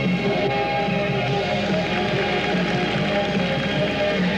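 Instrumental music for a figure skating short program, with long held notes.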